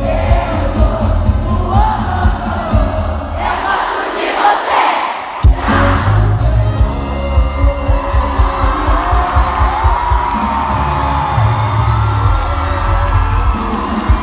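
Live pop band and singer performing, heard from within a cheering, singing crowd. About four seconds in the bass drops out for a moment under a swell of crowd noise, then the band comes back in with a sharp hit.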